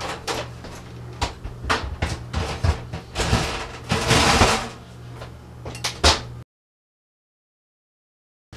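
Metal frames clamping a styrene sheet knock and clank as they are handled and slid onto an oven rack, with a longer scrape about three to four seconds in and a last knock just after six seconds. The sound then cuts off to silence.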